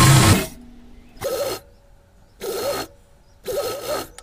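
Domestic sewing machine stitching gold gota lace along a folded cotton edge: a run that stops about half a second in, then three short bursts of stitching about a second apart.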